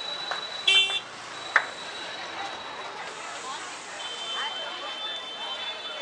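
Busy street-market crowd chatter, cut by one short, loud beep of a motor scooter horn about a second in, then a sharp click a moment later.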